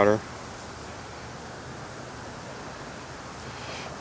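Steady, even background hiss with no distinct sounds in it, after a voice trails off at the very start.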